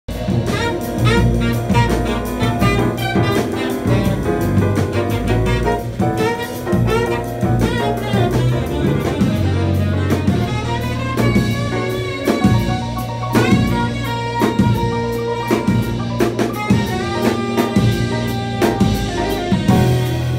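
Live jazz combo playing: saxophone leading with quick runs of notes over a busy drum kit with cymbal strokes, and piano behind.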